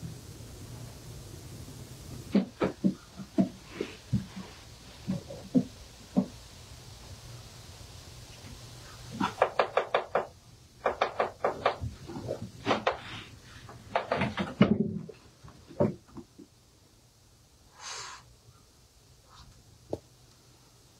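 Sharp clicks and knocks in a small wooden enclosure where a great horned owlet is being fed with forceps. They come singly at first, then in quick runs of several a second through the middle, and a short softer noise follows near the end.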